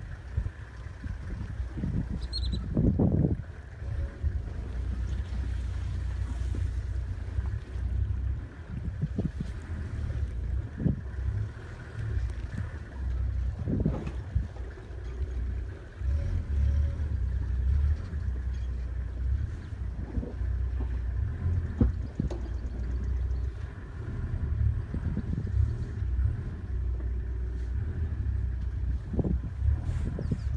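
A vehicle making a rough river crossing: a steady low rumble with irregular knocks and bumps, and wind on the microphone.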